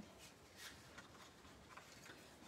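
Near silence, with a few faint, brief rustles of hands handling cardstock.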